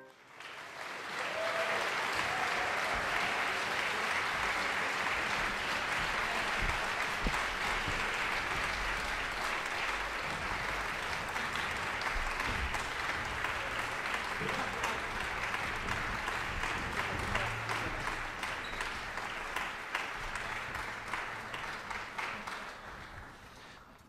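Concert hall audience applauding. It swells up about a second in, holds steady, then thins and dies away near the end.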